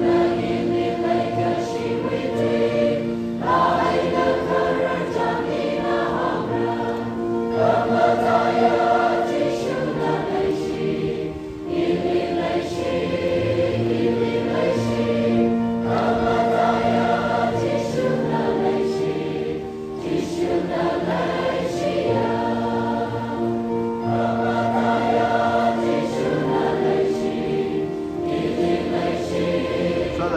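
A large choir singing in held chords, the phrases breaking off and starting again every few seconds.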